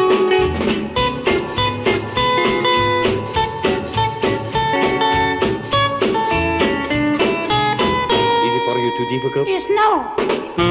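Instrumental music from a vinyl record: guitar playing a lead line of short plucked notes over a steady beat, with a note sliding in pitch just before the end.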